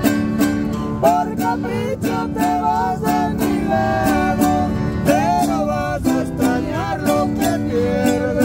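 Acoustic guitar strummed in a steady rhythm, with a voice singing a melody over it.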